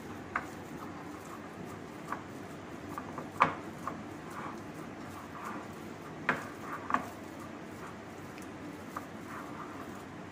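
Minced chicken being mixed by hand in a ceramic plate: soft squishing with a few sharp clicks against the plate, the loudest about three and a half seconds in and twice just after six seconds.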